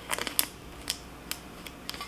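Clear transfer tape being peeled off a vinyl decal on a mug, giving a string of small sharp ticks and crackles, about one every quarter to half second, the loudest near the start.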